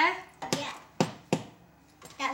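Three short, sharp knocks of a knife and a plastic plate being handled as bread is cut and served, about half a second apart.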